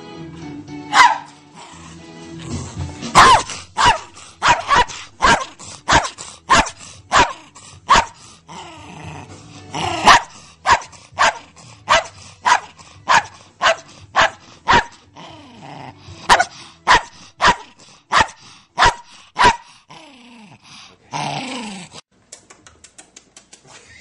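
A small white Maltipoo barking in fast, even runs of short, sharp barks, about two a second, with a couple of brief pauses between runs.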